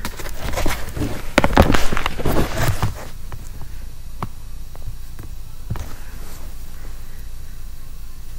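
A run of loud knocks and rustling for about three seconds, then scattered faint clicks and taps over a low background.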